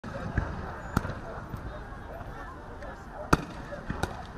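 Two sharp bangs, about a second in and again near the end, with softer knocks around them. Under them runs a faint murmur of distant voices.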